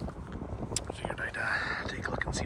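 Wind buffeting the microphone with an uneven low rumble, under soft, breathy, whisper-like voice sounds.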